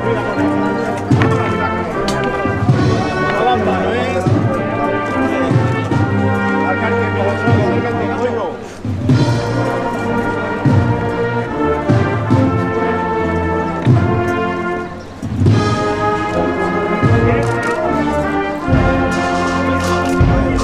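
Brass band with drums playing a processional march, loud and continuous, dropping away briefly about nine seconds in and again about fifteen seconds in.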